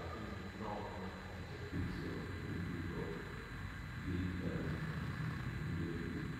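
Muffled, indistinct speech in a meeting room, with a faint steady high-pitched tone underneath.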